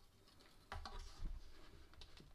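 Faint handling noise from fingers working a nylon string into a ukulele's pull-through bridge: a sharp click about two-thirds of a second in, then light ticks and a soft bump.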